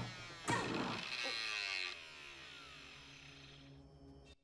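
A door creaking open: a long, wavering creak starting with a click about half a second in, loudest for the first second and a half, then fading away.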